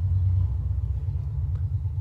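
A steady low rumble, the only clear sound, with nothing higher-pitched heard over it.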